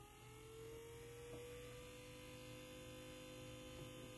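Small DC motor running under a homemade IGBT motor controller as a throttle pedal is pressed, giving a faint steady whine. Its pitch creeps up slightly in the first second or so as the motor gains speed, then holds, showing the throttle setting the motor's speed. A low hum sits underneath.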